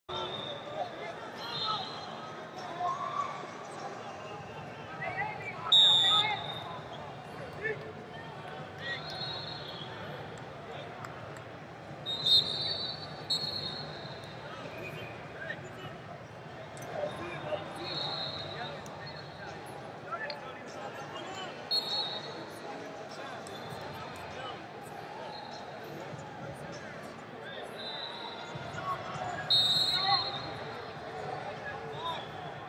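Wrestling-tournament arena ambience: short referee-whistle blasts from several mats sound every few seconds over a steady murmur of voices, with occasional sharp thuds of bodies and feet on the mats.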